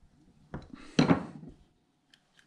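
Metal carburetor parts and hand tools clinking against the workbench during carburetor reassembly: a light knock about half a second in, then a louder clatter with a short ring about a second in.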